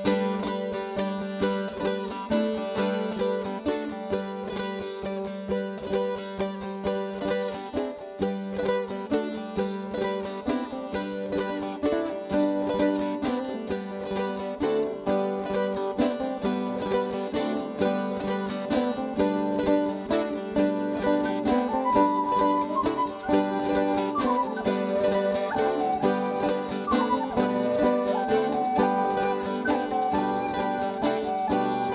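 Traditional Italian folk music played live by a band: strummed acoustic guitar and a mandolin-type plucked string instrument over bass, with a steady quick pulse. About two-thirds of the way through, a higher sustained melody line joins in.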